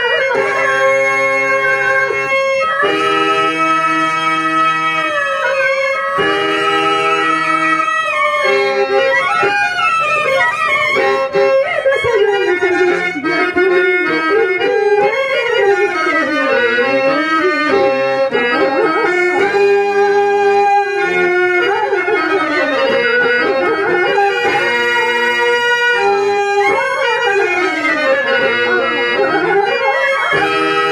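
A Telugu stage-drama verse (padyam) sung over harmonium accompaniment. The voice holds long notes and makes slow melismatic glides up and down in pitch over the harmonium's sustained reed tones.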